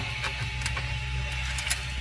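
Steady low hum of a powered-on Prusa MK3S 3D printer, with a few light clicks of hands on its plastic parts.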